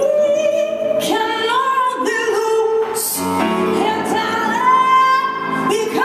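A woman singing live into a microphone, holding long notes that slide up and down in pitch.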